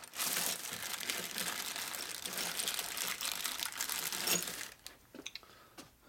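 Clear plastic parts bag crinkling as hands rummage through it and pull out a nut, thinning to a few light clicks near the end.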